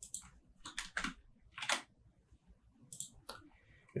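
A few faint, irregularly spaced computer keyboard keystrokes.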